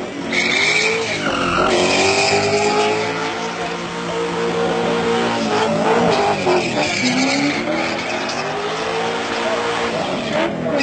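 Car engine revved hard through a burnout, held high with its note dipping and climbing again several times, while the spinning rear tyres screech against the pad.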